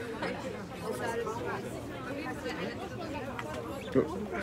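Chatter of several people's voices in a crowd, with one short sharp knock near the end.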